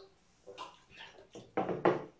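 Quiet sounds of drinking from glasses: a few short soft sips and swallows and light knocks of glass on a table, the loudest near the end.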